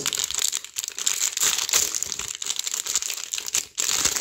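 Foil sticker packet being torn open and crinkled by hand: a dense run of fine crackles and rustles.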